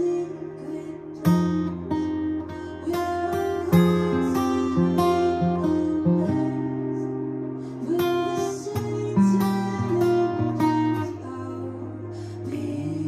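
Capoed steel-string acoustic guitar played fingerstyle: single melody notes are picked over ringing bass notes, and the bass changes a few times. It is a chord-melody arrangement still being worked out, so the picking is unhurried.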